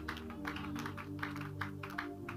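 Soft background music of sustained, held chords, with a quick run of light claps over it.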